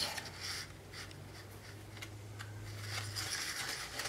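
Faint rustling and light scratching as a fuzzy pipe cleaner is pushed through holes in a paper plate and handled, with a few small ticks. A low steady hum sits underneath and stops about three seconds in.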